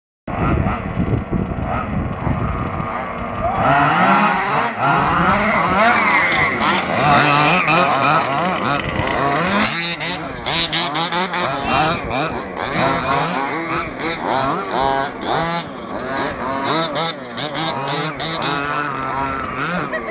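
Small two-stroke engines of radio-controlled baja buggies racing, several at once, their pitch rising and falling as they rev up and down around the track, louder from about three and a half seconds in.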